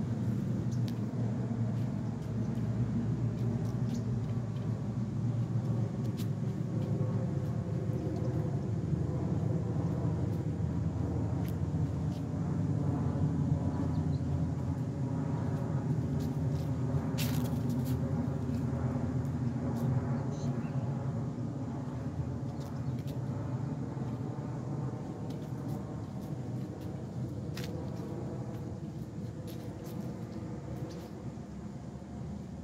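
A steady low mechanical hum, like a motor running, easing off slightly near the end, with a few sharp clicks.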